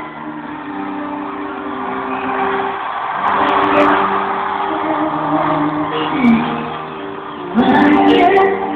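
Live arena concert heard from the audience: a slow pop ballad's sustained keyboard chords play between sung lines, and crowd noise swells in the middle.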